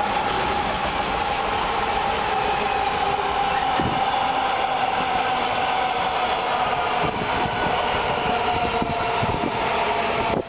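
Freight train of covered hopper wagons rolling past: a steady rumble and clatter of wheels on rail. A steady high tone runs through it, slowly sinking in pitch, and there is a single knock about four seconds in.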